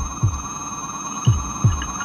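Heartbeat-like double thumps in the soundtrack: two pairs of low thuds, each dropping in pitch, over a steady electronic hum.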